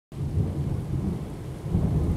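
Steady rain with low thunder rumbling, swelling and fading.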